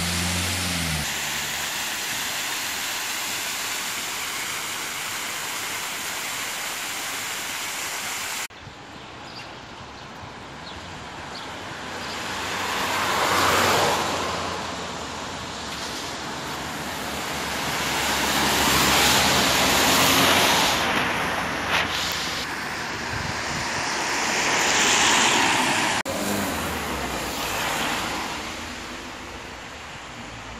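Water cascading down a tiered artificial rock fountain, a steady rush that cuts off suddenly about eight seconds in. Then vehicles pass on the street one after another, each swelling and fading, three in all.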